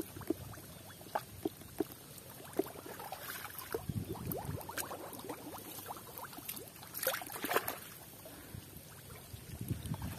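Hands groping and sloshing in shallow muddy ditch water, with scattered small splashes and wet squelches; louder splashing about seven seconds in.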